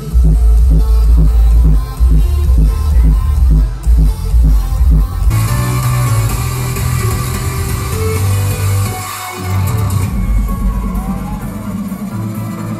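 Loud electronic dance music from a nightclub DJ set, with a heavy, pulsing bass beat. About five seconds in the bass eases and a brighter build-up comes in. The bass cuts out briefly just after nine seconds, then the low beat returns.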